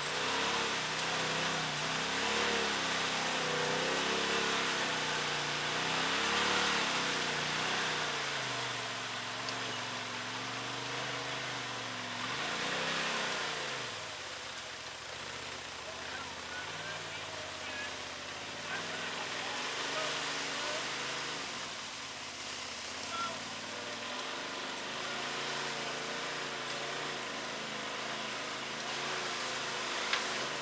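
Polaris RZR side-by-side's engine running and revving up and down as it crawls through a creek bed, its pitch rising and falling over a steady rush of noise.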